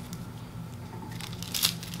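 Faint handling noise of makeup brushes being picked up and moved in the hands, with a small click near the end, over a low steady room hum.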